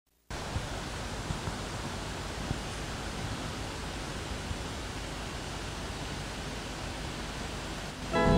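Steady, even hiss of microphone and room noise, with a few faint clicks.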